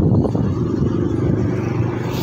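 Motor scooter running at low speed while being ridden, a steady engine hum under a loud low rumble of road and wind noise.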